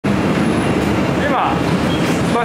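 Cabin noise inside a running city bus: a steady low engine and road rumble.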